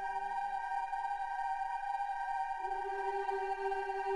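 Sampled choir (EWQL Symphonic Choirs) holding a sustained, slow-moving chord of long notes. A lower voice falls away about a second in and comes back a little past halfway.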